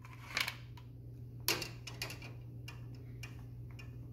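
Small clicks and taps of parts being handled, two sharper clicks among scattered light ticks, over a steady low hum.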